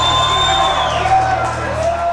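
A live rock band's amplified sound ringing out at the end of a song, with the audience whooping and cheering. A high steady tone holds through about the first second and then stops.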